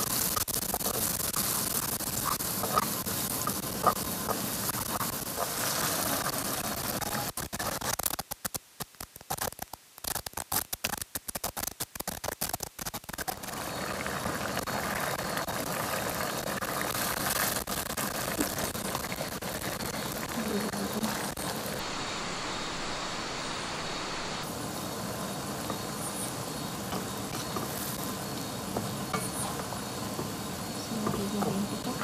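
Food sizzling in a wok while a wooden spatula stirs and taps against the pan as garlic and onion fry. The sound breaks into choppy near-silent gaps about eight to thirteen seconds in, then prawns in sauce sizzle steadily as they are stirred.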